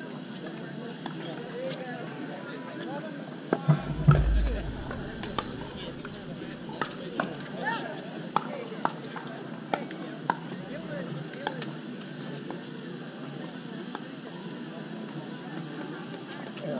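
Sharp clicks of pickleball paddles hitting a plastic ball, coming irregularly about once a second, with a low thump about four seconds in.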